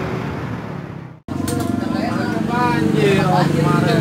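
Workshop noise with voices fades into a sudden dropout about a second in. After it, an engine runs steadily under people talking.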